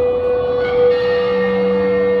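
Sustained synthesizer drone holding one steady note through the PA, with a lower note and higher tones joining about a second in.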